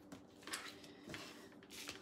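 Faint handling of a thin flexible plastic cutting mat being laid on the counter and a knife set down on it: a few soft taps and rustles, the clearest about half a second and a second in.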